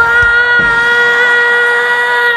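A boy crying loudly in one long wail held at a steady pitch.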